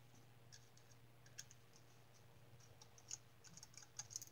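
A few faint, sharp clicks of a small screwdriver working the screws on a MODION ion pump's power-supply housing, coming closer together near the end, over near silence with a faint steady low hum.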